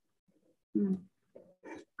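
A woman's short hummed filler 'ừ' about a second in, after a brief pause, followed by a couple of faint short vocal sounds.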